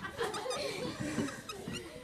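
Schoolchildren in a classroom chattering and laughing in short bursts.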